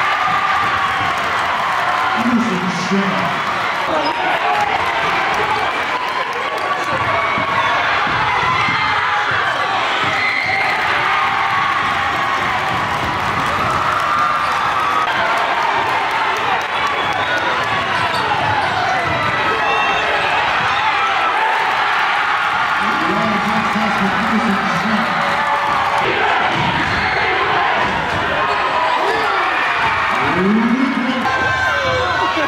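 Live game sound of a high school basketball game: a crowd of spectators calling and shouting throughout, with a basketball bouncing on the hardwood court.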